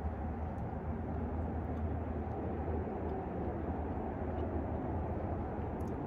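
Steady low rumble of outdoor background noise, with no distinct sounds standing out.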